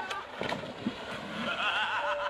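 Splash and sloshing water as a motor scooter and its rider plunge into a pond. A person's voice comes in about one and a half seconds in.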